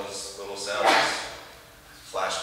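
A man speaking in a lecture room, with a short, loud, noisy sound about a second in that stands out above the voice.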